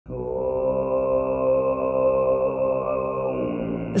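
Low, sustained throat-singing drone in the Altai kai style, with a steady whistling overtone held above it; the pitch shifts slightly near the end.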